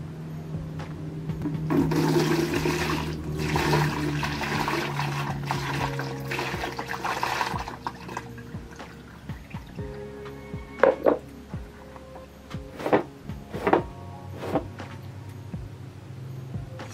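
Water poured from a plastic container over a person's face, splashing down into a plastic bucket below, a rush lasting about six seconds from about two seconds in. Then a few short, sharp sounds.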